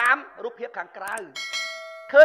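A bell-like notification chime enters about a second and a half in, ringing with many steady overtones over a man's speech. It is the sound effect of an on-screen subscribe-button animation.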